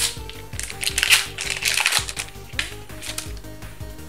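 Foil trading-card booster pack being torn open and crinkled by hand, in several short bursts, over steady background music.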